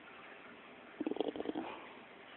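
Miniature pinscher making a short vocal sound about a second in, a rapid run of pulses lasting about half a second.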